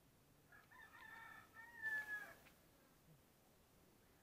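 A rooster crowing once, faint, for about two seconds: a broken opening followed by a long held note.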